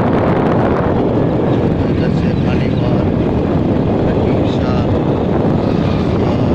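Strong wind buffeting a phone microphone while travelling along an open road: a loud, steady rumble with no break.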